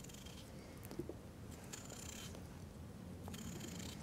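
Faint scraping of a curved bird's beak tourné knife paring the skin and flesh of a raw potato, with a light tick about a second in and a slightly stronger scrape around the middle.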